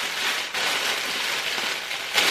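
Clear plastic packaging bag crinkling and rustling as it is handled.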